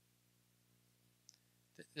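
Near silence: a pause in speech with a faint steady hum, and one soft click a little past halfway.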